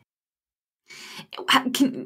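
Dead silence for almost a second, then a short audible breath in, and a woman's voice starting to speak about a second and a half in.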